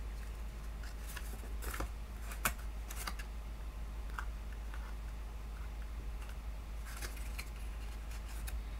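Cardstock rustling and crackling as hands fold and press the wings of a small die-cut paper basket: scattered soft crinkles and clicks, with a sharper snap about two and a half seconds in.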